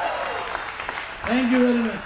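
Audience applause as a qawwali song ends. A man's voice comes in briefly over it near the end.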